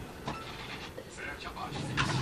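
Faint, indistinct speech over a low background noise.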